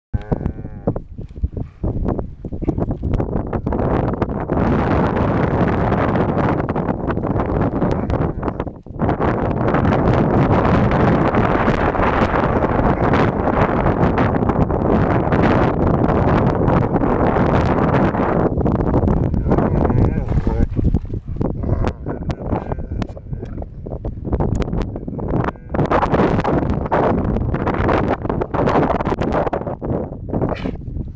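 German shepherd dogs growling as they tug at a stick in play, a near-continuous growl with a few short breaks.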